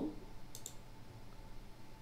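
Two quick clicks of a computer mouse, close together, over faint room hiss.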